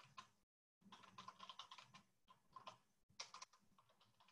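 Faint computer keyboard typing: quick clusters of key clicks, heard through a video-call microphone. The sound cuts out completely for a moment about half a second in.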